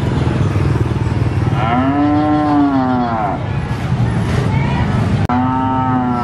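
Cattle mooing: one long moo that rises and then falls in pitch, about two seconds in, and a second moo starting near the end, over a steady low background rumble.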